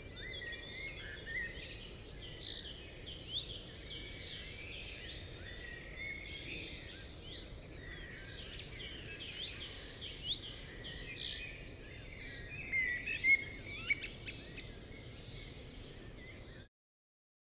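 Many birds singing and calling over one another, a dense chatter of short chirps and trills over a low, even background hiss. A few louder, sharper calls stand out near the end.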